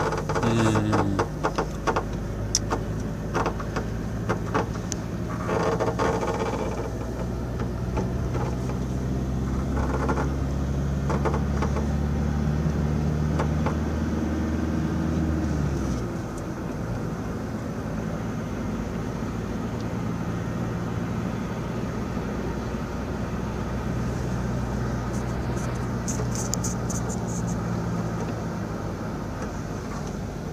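Car engine and road noise while driving. The engine hum holds steady, then drops in pitch about halfway through as the car slows, leaving a lower, quieter drone.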